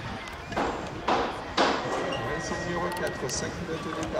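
A BMX starting gate dropping for a race start: a few sharp bangs in quick succession about a second in as the gate falls and the riders launch, over the voices of people around the track.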